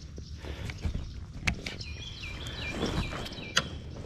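Scattered sharp clicks and knocks of tackle and kayak hull as a hooked bass is played up to a fishing kayak, over low water noise.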